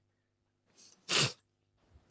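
A person sneezing once, a short sharp burst a little past a second in, after a faint intake just before it.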